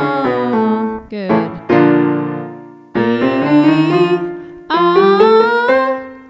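A singer's voice sliding smoothly up and down through the range on sustained vowels in a vocal slide exercise, over piano chords. Midway a piano chord rings out on its own before the voice comes back with two rising slides.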